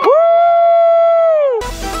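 One long, high "wooo" cheer from a single voice: it rises, holds, then falls away. About a second and a half in, upbeat electronic music cuts in abruptly.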